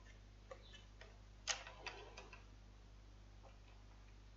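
Faint plastic clicks from hands handling a Huawei B310s 4G modem to restart it. The loudest is a sharp click about one and a half seconds in, followed by a couple of lighter ticks; the rest is near silence.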